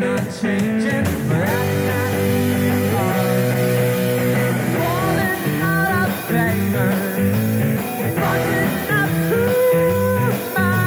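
Rock band playing live: two electric guitars, electric bass and drum kit, with a male lead singer.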